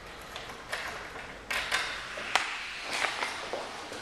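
Sounds of someone walking out through a door: a series of sharp clicks and knocks, about seven in four seconds, the loudest around the middle.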